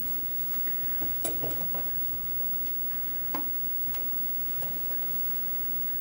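A handful of light metallic clicks and taps over quiet room tone, the sharpest about three seconds in. They come from a helping-hands clamp's jointed arms and clips being repositioned and small hand tools being handled.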